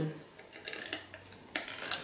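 Plastic lid pried off a paper fast-food drink cup: a few faint handling noises, then a sharp plastic click about one and a half seconds in as the lid comes free.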